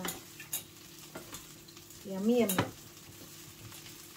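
A steel spoon stirring a thick curry as it simmers in a stainless steel pan, with a low sizzle and a couple of sharp clicks of the spoon against the pan. A short voiced sound comes about two seconds in.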